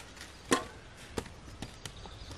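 A sharp wooden knock about half a second in, then a few lighter clicks and cracks, as sticks are worked at a campfire.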